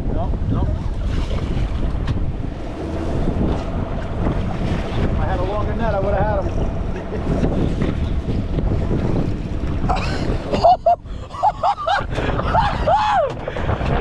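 Wind buffeting the microphone over the sound of the sea and boat on choppy water. Raised, excited voices break in briefly about five seconds in and again louder from about ten seconds.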